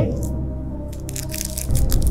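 Soft background music with steady held tones, over faint crinkling of a paper sugar packet being handled in the fingers.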